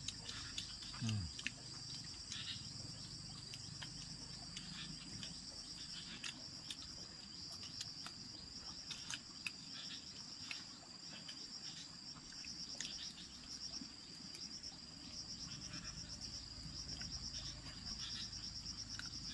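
Insects trilling steadily in a high, continuous chorus that pulses rapidly in places, mostly near the end, with faint scattered small clicks.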